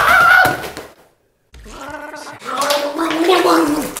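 A person's voice: a short loud yell at the start, then after a brief silence a longer stretch of pitched vocalizing.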